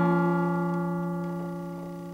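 Acoustic guitar's final strummed chord ringing out and slowly fading away, the closing chord of the song.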